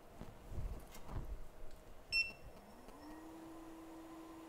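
A few dull handling bumps, then a short beep about two seconds in as the hot air rework station is switched on. Its fan then spins up in a rising hum that settles into a steady tone.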